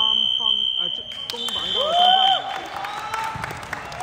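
A referee's whistle blown in one long steady blast that cuts off sharply about two and a half seconds in, over players' voices in the gym.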